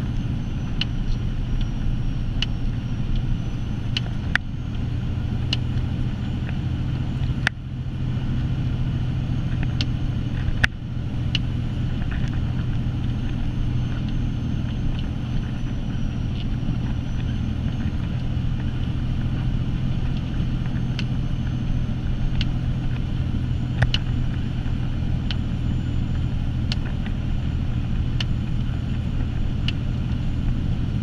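Steady low drone of a Sterling tandem-axle plow truck's diesel engine and drivetrain, heard from inside the cab while driving, with scattered single sharp ticks and clicks.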